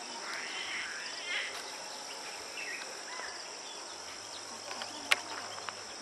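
Steady high-pitched insect chorus with scattered short bird chirps, and one sharp click about five seconds in.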